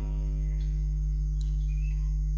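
Quiet background music over a steady low hum.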